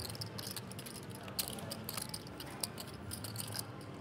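Scattered light clicks and clacks of clay poker chips and cards being handled at a poker table, over a low murmur of room noise.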